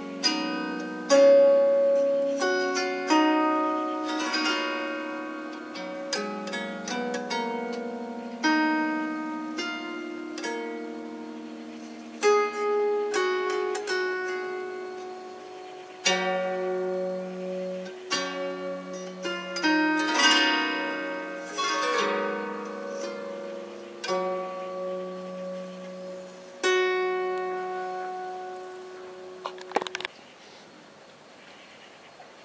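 Handmade ten-string kantele-style zither of African mahogany and palo rojo with metal strings, plucked by the fingers one note at a time and in two-note intervals. Each note rings clear and bell-like with a long sustain that overlaps the next.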